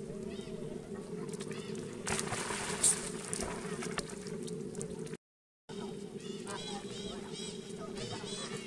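Macaques giving short, high squeaky calls, coming in quick succession in the last couple of seconds, over the steady rush of shallow flowing water. The sound drops out completely for a moment about five seconds in.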